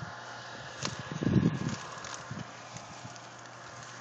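Onion plants rustling and crackling as a hand reaches in among the stalks to pull an onion. A short low rumble comes about a second in.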